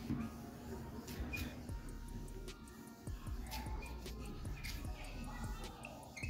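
Soft99 Glaco applicator tip rubbing a glass-coating liquid across a car windshield, making faint scrapes, light clicks and a few brief high squeaks.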